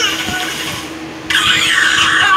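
Cartoon vomiting sound effect, a wet gushing spray, heard through a TV speaker; about a second and a half in, a character's high, squealing voice cuts in over it.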